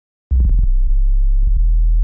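Low, steady bass tone from FL Studio's 3x Osc synthesizer, previewed as a note is placed and dragged in the piano roll. It starts about a third of a second in and is broken by a few short clicks where the note is retriggered.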